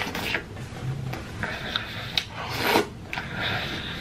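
Close-up wet chewing and lip-smacking of a mouthful of saucy curried chicken, with a run of short sticky clicks and a louder smack a little past halfway.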